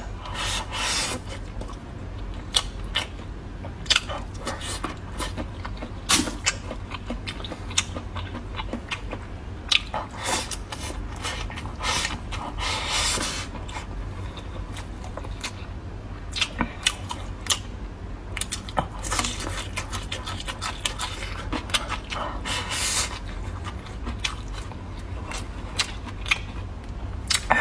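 A person chewing and smacking on braised pork trotter and rice close to the microphone: a run of irregular short clicks and smacks over a low steady hum.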